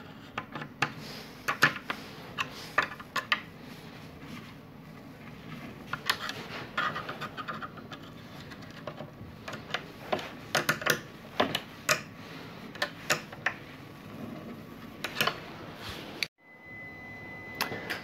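Small metal hand tools, a 7 mm open-end wrench and a flat screwdriver, clicking and clinking irregularly against the nuts and metal hub of a variable-pitch propeller as the nuts are tightened. The clicks cut off abruptly near the end.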